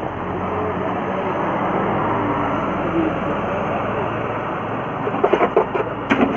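Steady, loud rushing kitchen noise in front of a lit gas-fired pizza oven. Near the end come a few sharp metallic clacks as a metal pizza peel goes into the oven.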